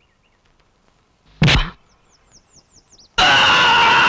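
Film soundtrack: near quiet with a few faint high chirps like birdsong, a single heavy thud about one and a half seconds in, then a loud, steady blast of dramatic background score from about three seconds in.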